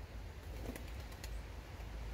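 Pigeon cooing faintly once, about half a second in, over a low steady rumble.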